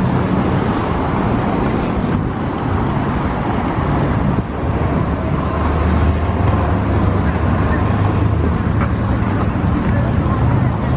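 Steady city street traffic: car engines and road noise in a continuous low rumble.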